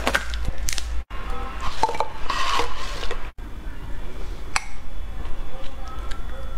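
Plastic snack wrappers crinkling and tearing in several short bursts, over a steady low hum. The sound cuts out abruptly twice.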